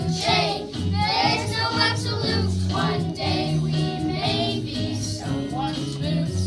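A group of young children singing a song together over instrumental accompaniment, with steady held bass notes under the voices.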